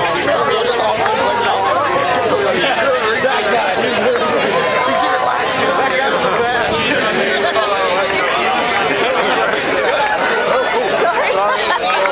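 Crowd of many people talking at once, a steady babble of overlapping voices with no single clear speaker.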